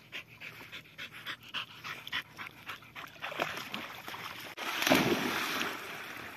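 Australian Cattle Dog whining and panting in short, rapid bursts. About five seconds in comes a loud splash as a dog goes into the water.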